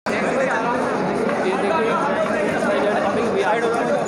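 Many voices talking and calling out over one another in a packed crowd in a hall, loud and close to the microphone, with a momentary cut-out at the very start.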